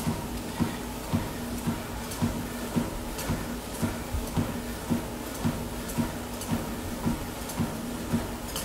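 Footfalls on a cardio exercise machine, thudding evenly about twice a second over a steady low hum.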